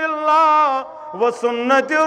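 A man's voice chanting in long, held, wavering notes, a sung recitation within a sermon, with a short break about a second in before the chant resumes.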